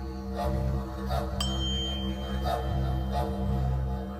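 A tuning fork is struck about a second and a half in and rings one high, clear tone for about two seconds. Low droning background music plays throughout.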